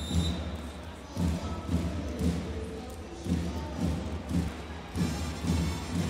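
Music with a steady low thumping beat.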